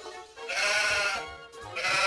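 Sheep bleating twice, two wavering 'baa' calls of about a second each, over background music.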